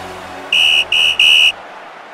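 A referee's whistle blown three times in quick succession, three short, shrill blasts over the fading tail of intro music.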